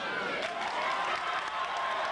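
Audience applauding, with voices audible through the clapping.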